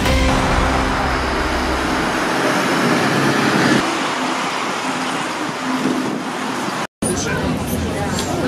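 Outdoor ambience of a busy street fair: an even hum of people talking and moving about, mixed with traffic noise. For the first two seconds it carries a heavier low rumble. Near the end the sound breaks off for an instant and comes back.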